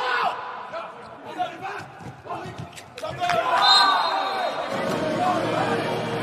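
Indoor volleyball rally in a large hall: sharp hits of the ball and short shoe squeaks on the court, with players shouting. From about three seconds in the shouting gets louder and a steadier background hum of voices builds.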